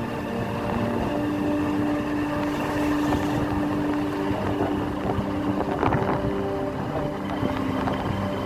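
Motorcycle engine running while riding along, its note rising about a second in and dropping again around four seconds in, with wind rumbling on the microphone.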